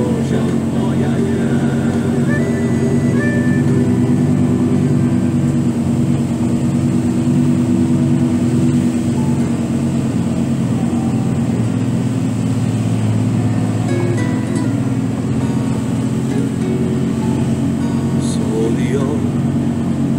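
Background music, a slow song with sustained low tones, over the steady drone of a heavy truck's engine.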